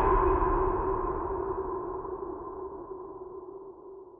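Channel intro sound effect: a sustained electronic tone with a higher ringing tone above it, like a struck gong or synth stinger, fading out steadily.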